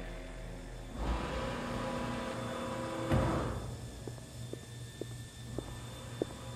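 Dark horror synth scoring and sound design: a sustained note fades out, then a noisy swell builds and ends in a low hit about three seconds in. A few faint scattered clicks follow.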